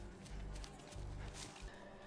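Faint footsteps of people running through overgrown grass and brush: soft, uneven thuds.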